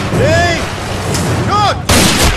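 Action-film soundtrack: over a continuous rumbling bed come two short pitched calls, each rising then falling. Near the end a sudden loud blast, a gunshot, bursts a gourd apart.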